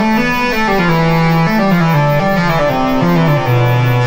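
Behringer 2600 analog synthesizer playing a slow line of low, sustained notes, some sliding from one pitch to the next, with a rich stack of overtones.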